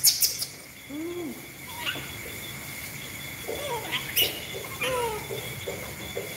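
Pet monkeys giving short arched coos and squeaks, then a quick run of short calls in the second half, over a steady high insect trill from crickets. A few sharp clicks stand out, the loudest at the very start and about four seconds in.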